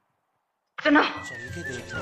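A gap of dead silence, then, a little under a second in, a voice says "suno" ("listen"). Film background music with a held high tone and a low bass line starts under the voice just after.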